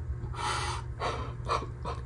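A person breathing out hard after a hit from a vape pen: a rush of air about half a second in, followed by several short gasping breaths.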